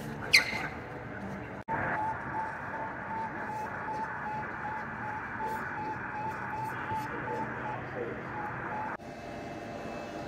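A recording of Sputnik 1's radio signal played through an exhibit radio receiver: a regular train of short, even beeps, about three a second, lasting about seven seconds. Near the start, before the beeps, a brief sharp high chirp that falls in pitch.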